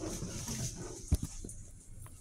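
Elevator car doors sliding shut, with one sharp knock about a second in as they close.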